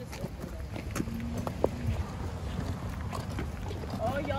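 Rumbling handling noise of a phone microphone rubbing against clothing and a bag strap while carried on a walk, with light wind on the microphone and scattered small clicks.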